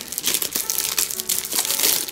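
Clear plastic wrapper crinkling and crackling in irregular bursts as hands peel it off a rolled-up cloth mouse mat.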